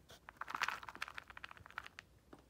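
Dry dog kibble poured from a plastic scoop into a bowl, a quick, quiet rattle of many small pieces clicking as they land.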